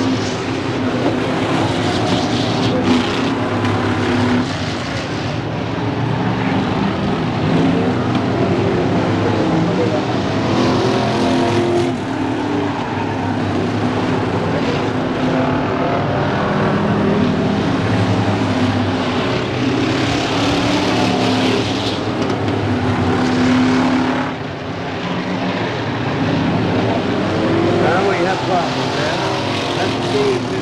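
A field of stock cars racing around the track, several engines running hard together. The sound swells and fades as cars pass, and it drops briefly about 24 seconds in.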